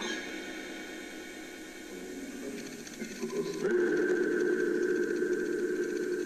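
Spirit box radio output: hiss with several steady electronic tones. About three and a half seconds in it grows louder and settles on a held low tone with a higher one above it.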